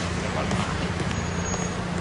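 Steady street traffic noise: a low running engine hum under an even wash of road noise.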